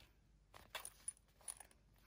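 Mostly near silence, with a few faint clicks and soft handling sounds from a faux-leather zip-around wallet being turned over in the hands.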